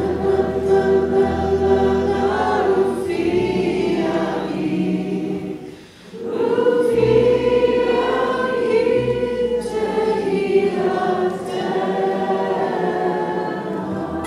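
Choir singing sustained notes over a low, steady instrumental accompaniment. The singing dips briefly about six seconds in, then comes back fuller.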